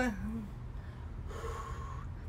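A woman out of breath after a set of exercise kicks: a falling voiced exclamation trails off about half a second in, then breathy exhales follow, with a faint voiced hum near the end.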